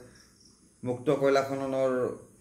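A man's voice speaking one word after a short pause. A faint steady high-pitched sound runs in the background during the pause.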